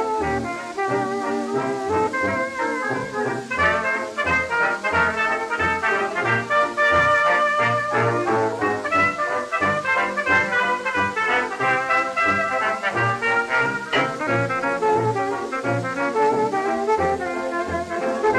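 A 1920s dance orchestra plays the instrumental opening of a slow fox trot, with an even low beat underneath, heard from a restored 78 rpm shellac record.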